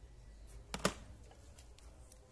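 Two quick plastic knocks just under a second in, as a handheld digital multimeter is set down on the scooter's battery pack.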